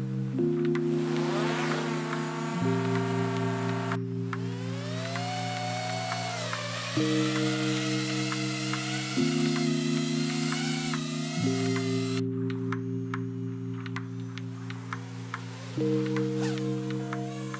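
Background music of slow sustained chords, with small quadcopter drone motors whining up in pitch over it: once about a second in, and again from about four seconds, levelling off into a steady whine.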